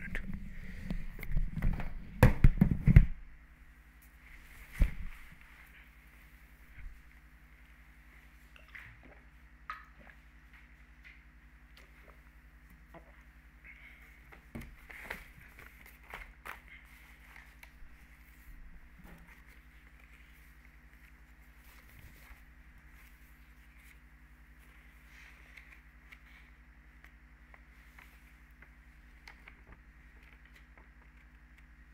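Headset and microphone being handled, loud rustling and knocks for about the first three seconds, then faint room tone with a steady electrical hum and a few scattered distant knocks and footsteps.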